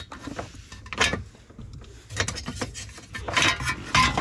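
Ratchet wrench with an 8 mm socket clicking as it backs out small screws, with metal-on-metal clinks from the socket and a sheet-metal shield under the steering column. The clicks come in short irregular runs, one about a second in and more from about two seconds on.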